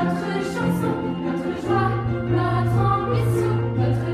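A song from a stage musical: several voices sing together over instrumental accompaniment, and the bass note changes a little under halfway through.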